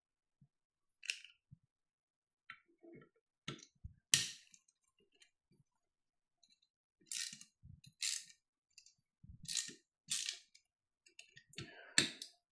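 Faint, scattered clicks and small knocks, then a handful of short scrapes, from hand tools and rifle parts being handled while the handguard screws of a SIG Sauer MCX Spear LT are removed.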